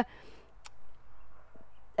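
A quiet pause with faint handling sounds as seeds are placed by hand into a seed tray, and one short sharp click about two-thirds of a second in.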